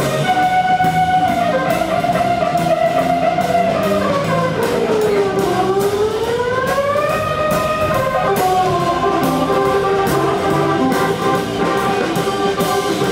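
Live blues band playing electric guitar over a steady beat, with a held lead line that slides down and climbs back up in the middle.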